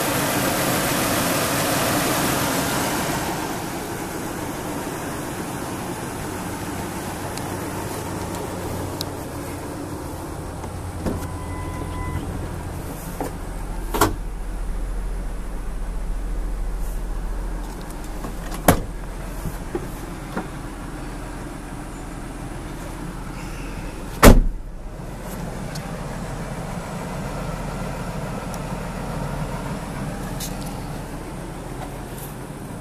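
2005 Ford F-150 pickup idling steadily, heard first at the open hood and then from inside the cab. Three sharp knocks stand out about five seconds apart, the last and loudest about six seconds before the end.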